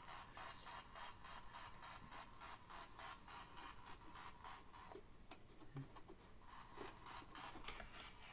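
Near silence: faint room tone with soft, rapid ticking over the first few seconds and a couple of faint knocks later.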